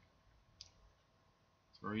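A quiet pause with a single short, sharp click a little over half a second in and a fainter one just before a man starts speaking near the end.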